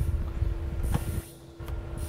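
Low rumble from a handheld phone microphone being moved about, over a steady background hum, with a couple of faint clicks about a second in and near the end.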